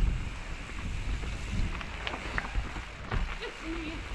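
Mountain bike rolling fast down a dirt singletrack: a steady low rumble of tyres over dirt and small rocks, with wind buffeting the camera microphone and a few light clicks and rattles from the bike.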